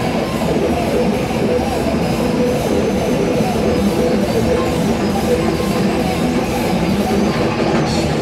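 Psychedelic rock band playing live and loud: electric guitar, drum kit and synthesizer in a dense, continuous jam.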